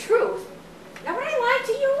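A dog whining and yowling in high, wavering cries that rise and fall: a short one at the start, then a longer run of them from about a second in.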